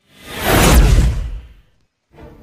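A whoosh transition sound effect with a deep low rumble, swelling up and dying away within about a second and a half, its hiss sweeping downward.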